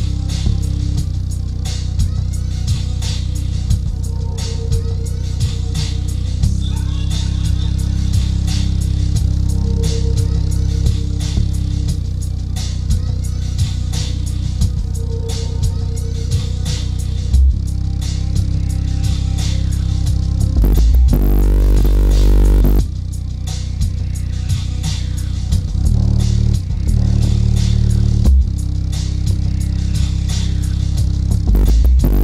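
Bass-heavy music played loud through a 12-inch MB Quart subwoofer, deep bass under a steady beat; about 21 s in, a short louder stretch of deep bass before the beat returns. The driver is brand new and not yet broken in, which the owner says makes its lows weak.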